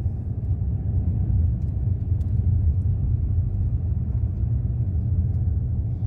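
Steady low rumble inside the cabin of a moving Maruti Suzuki Alto 800: its small 800 cc three-cylinder petrol engine running under way along with road noise, heard from the driver's seat.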